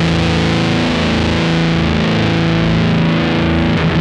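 Electric guitar played through the Stone Deaf Rise & Shine fuzz pedal: a distorted chord held and sustaining, its bright top end slowly thinning toward the end.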